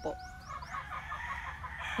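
A chicken clucking: a quick run of short notes, about six a second, with faint high rising chirps near the start.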